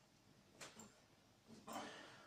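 Near silence: quiet room tone with two faint, brief sounds, one about half a second in and a slightly louder one near the end.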